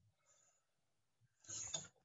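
Near silence, then a short burst of handling noise about a second and a half in, lasting about half a second.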